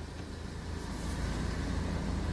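A car engine running at idle, a low steady rumble that grows slightly louder toward the end.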